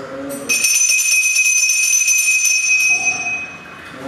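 Puja hand bell (ghanta) rung continuously for about three seconds, one bright ringing tone with a fast shimmer. It starts half a second in as the chanting breaks off. The chanting resumes faintly under it near the end.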